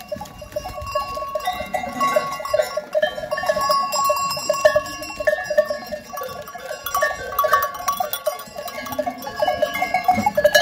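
Bells on a herd of mostly Kilis goats clanking and jangling continuously as the animals crowd and jostle together, many small ringing strikes overlapping without a steady rhythm.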